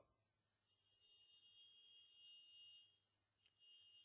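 Near silence, with only a faint, high steady tone that breaks off about three seconds in and returns briefly near the end.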